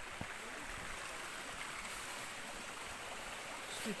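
Steady rush of water from a small cascade running over moss-covered rock.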